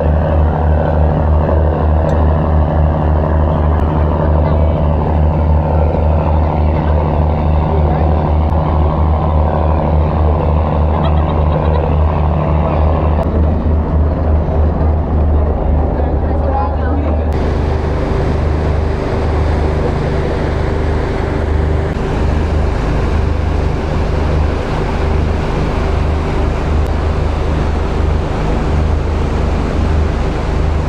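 Engine of a large passenger river cruise boat running steadily underway, a loud low drone, with water rushing along the hull. A higher part of the drone drops out about thirteen seconds in.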